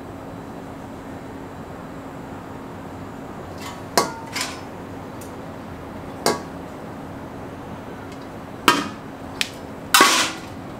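Sharp knocks and clinks of the Weber Jumbo Joe grill's porcelain-enamelled steel lid and parts being handled during assembly. There are about five knocks, the loudest about four seconds in and near the end, one with a short metallic ring.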